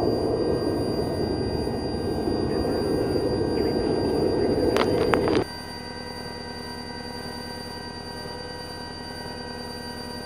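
Steady jet engine and airflow noise aboard the climbing White Knight carrier aircraft, powered by twin turbojets, with a few sharp clicks. About five seconds in, the sound drops suddenly to a quieter steady hum with faint even tones.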